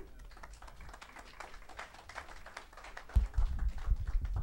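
A small audience clapping: dense, irregular claps at moderate level. About three seconds in, a heavy low thump and rumble from a microphone being handled.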